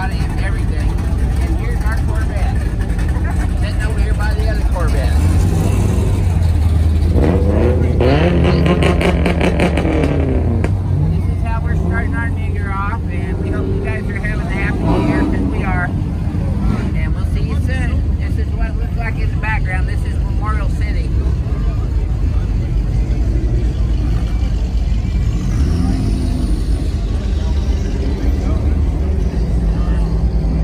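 People talking over the steady low rumble of car engines running, with an engine revving up and down about seven to ten seconds in.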